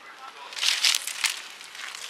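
Dry, thorny bramble stems crackling and snapping as they are pulled and torn away by gloved hands, in a quick cluster of sharp rustles in the first half.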